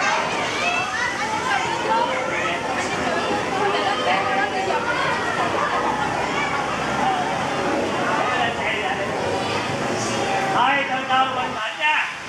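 Babble of many children's voices talking and calling out at once, a continuous busy chatter.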